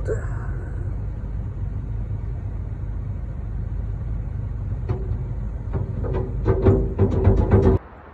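Steady low rumble of a vehicle engine running, heard from inside the ute's cab. Music-like tones come in over it about six seconds in, and both cut off suddenly just before the end.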